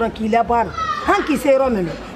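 Speech only: a woman talking animatedly in Malinke, her voice rising and falling, with a long high falling stretch about halfway through.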